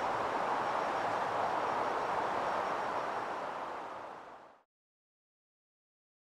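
Steady outdoor woodland background noise, an even hiss with no distinct events. It fades out and gives way to silence about four and a half seconds in.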